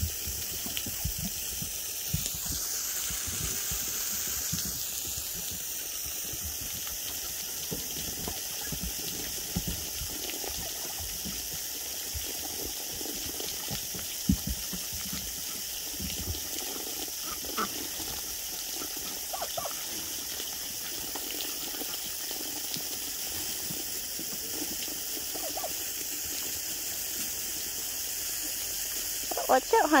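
Garden hose spraying a steady stream of water, a continuous hiss of spray and spatter, with a few faint calls from ducks and chickens partway through.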